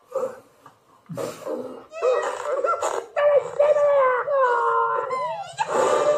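Cartoon dog's voice from the film trailer's soundtrack: a long whining, howling call in the second half, wavering and sliding down in pitch several times, after a few short sounds at the start.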